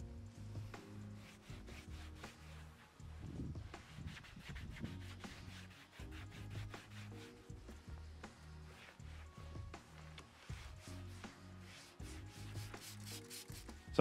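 Cloth rubbing over a textured plastic car door card in repeated faint wiping strokes, taking off the all-purpose cleaner. Quiet background music with soft sustained chords runs under it.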